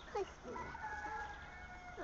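Several overlapping animal calls. Some slide up or down in pitch, and one high call is held for about a second, with a short louder call just after the start.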